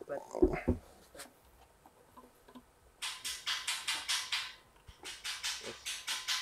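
Rapid runs of scratching and rubbing noise as a large 21-inch woofer's frame is handled and worked into its speaker cabinet, in two spells about three and five seconds in, with a brief voice at the very start.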